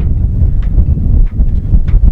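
Wind buffeting the camera microphone: a loud, gusty low rumble, with a few faint ticks.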